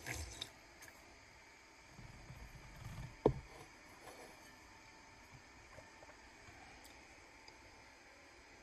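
Quiet room with faint handling noises: a short rustle at the start, soft low bumps around two to three seconds in, and one sharp knock just after three seconds.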